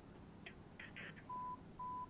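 Two short beeps of one steady pitch from a telephone line, about a second and a half in and near the end, over faint background hiss.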